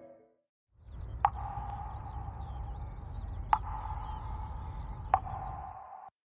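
Heating boiler plant running: a steady low hum with a steady mid-pitched tone over it. Three sharp clicks come about a second in, halfway through and near the end.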